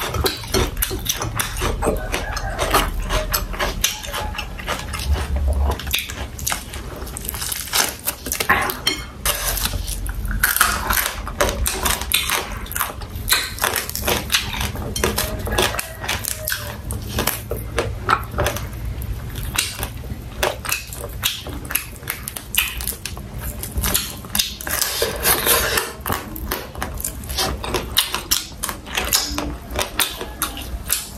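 Close-miked chewing and crunching of fried quail, a dense run of quick crackling clicks and wet mouth sounds, with the crispy bird being torn apart by hand partway through.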